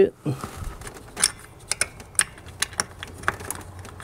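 Irregular small plastic and metal clicks and rattles of gloved hands fitting an oxygen sensor's wiring connector and clip back into its bracket in an engine bay.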